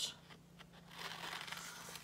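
Faint rustling of folded white computer paper as scissors are set to it and begin cutting, a little louder in the second half.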